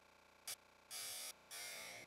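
A brief click, then two short bursts of static-like hiss, each about half a second long.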